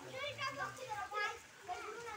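Voices talking, children's voices among them.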